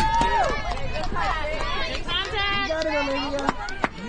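Spectators and players yelling and cheering during a play in a softball game: one long held high shout at the start, then several excited voices overlapping. Two sharp knocks come near the end.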